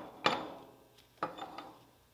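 Metal stuffing box cap clanking as it is put onto the stuffing box: one sharp knock, then a lighter knock and a few small clicks.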